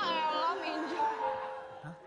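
A loud, high meow-like cry that rises in pitch and then levels off, followed by a few held musical tones.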